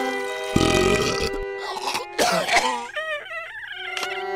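An animated larva character's cartoon voice over background music: a low, rough croaking sound lasting about a second, followed by short wavering crying sounds near the end.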